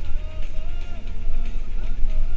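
Music with a held, gliding melody and heavy bass, playing over the low, steady rumble of a car driving on the highway.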